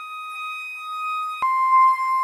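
Concert flute holding long, pure tuning notes: a high E-flat, then dropping to a C about halfway through with a brief click at the change.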